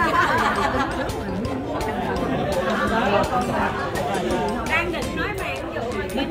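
Chatter of a group of diners: many voices talking over one another at once.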